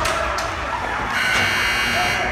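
Ice rink buzzer sounding a harsh, steady, electric tone that starts about a second in and lasts under a second.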